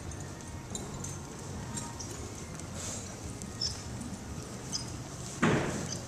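Soft footfalls of a horse walking in arena dirt, heard faintly over a steady low hum. A short, loud rush of noise comes near the end.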